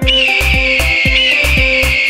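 A long, high eagle screech over a steady dance-music beat with bass thumps.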